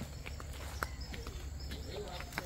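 Footsteps of people walking over ground: a scatter of light, irregular clicks over a steady low rumble.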